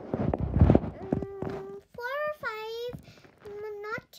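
A short burst of rustling and knocks in the first second, the loudest part, then a young girl's voice making drawn-out, gliding sounds with no clear words.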